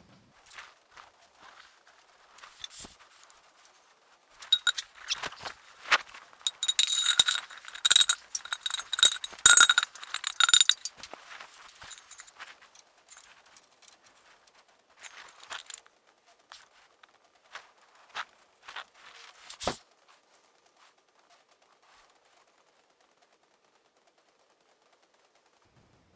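Steel radius rod of an early Ford back axle being set in place on the axle and torque tube rig: a run of metal clanks and scrapes with a ringing tone, then scattered clinks and one sharp knock about three-quarters of the way through.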